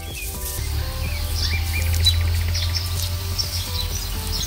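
Birds chirping over soft background music with held notes and a steady low bass.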